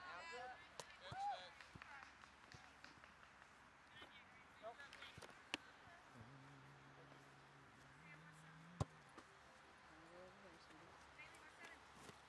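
Quiet open-field ambience with faint, distant voices calling now and then. Two sharp knocks sound, about five and a half seconds in and again near nine seconds, and a faint low steady hum runs for a few seconds in between.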